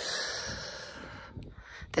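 A person's long breath out, an airy hiss that starts abruptly and fades away over about a second and a half.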